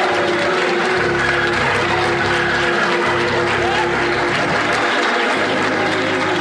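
Hammond organ holding sustained chords over bass notes that change about once a second, with audience applause underneath.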